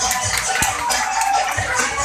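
Dance music played over a sound system, with a bass beat and rattling shaker-like percussion on top.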